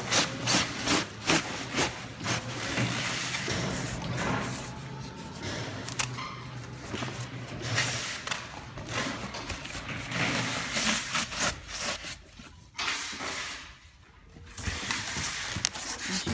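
Foam packing sheets and cardboard rubbing and scraping in quick strokes as they are worked into a shipping box, then uneven handling noise over a steady low hum.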